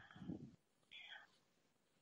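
Near silence with faint voice sounds: a soft low murmur just after the start and a brief whispery breath about a second in.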